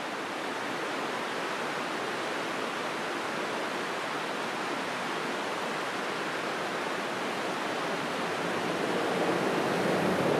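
Fast river rapids rushing steadily, fading up in the first second. Near the end the sound swells slightly as a Jeep Wrangler drives up the snowy road.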